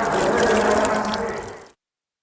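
Ambient sound of river water with voices underneath, a steady rush that fades out near the end into silence.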